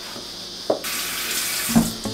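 Kitchen tap turned on about a second in, water running steadily into a stainless steel sink.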